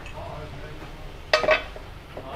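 A short metallic clink about one and a half seconds in, as cleaned aluminium motorbike engine parts are handled and set down.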